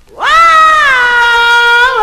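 A woman singing one long, high held note with no accompaniment, sliding up into it about a quarter of a second in and then holding it steady: the unaccompanied opening of an early-1960s R&B record.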